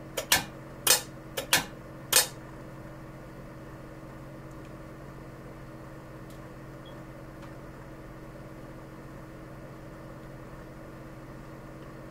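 Corsa marine exhaust diverter solenoid clicking as power is switched to it through the trigger wire, about six sharp clicks in the first two seconds or so as the valve is worked, on the starboard unit that is slow to respond. After that only a steady low hum.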